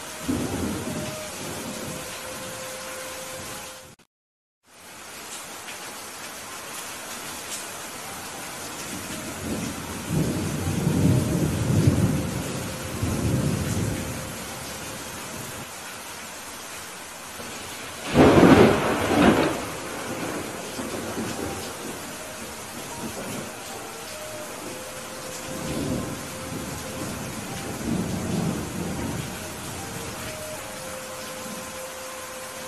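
Heavy rain falling steadily under rolling thunder: low rumbles about a third of the way in, one loud peal a little past halfway, and fainter rumbles near the end. The sound cuts out completely for about half a second a few seconds in.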